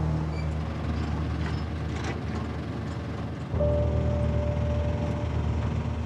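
Cattle truck engine running with a steady low hum, under background music. About halfway through, the sound shifts abruptly and a sustained higher note comes in.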